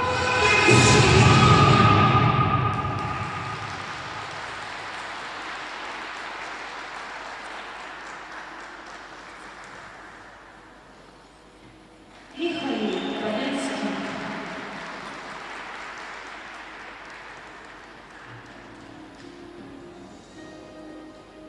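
Program music ending about two seconds in, followed by audience applause in an ice rink that fades slowly over the next ten seconds. About twelve seconds in, an echoing voice starts up over the hall and trails off.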